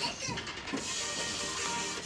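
A song playing through a phone's small speaker.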